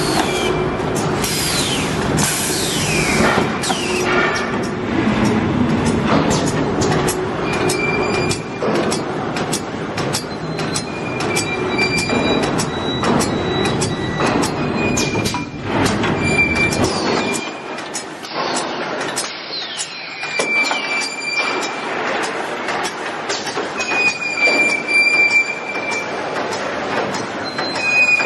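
Plastic-bag sealing-and-cutting machine with a robotic stacking arm running: rapid, repeated mechanical clacking with short squeaks. The low rumble drops away about two-thirds of the way through.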